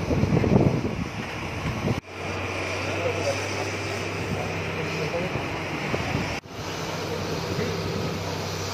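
Tata Hitachi hydraulic excavator's diesel engine running with a steady low hum, with wind buffeting the microphone in the first couple of seconds. The sound drops out briefly twice.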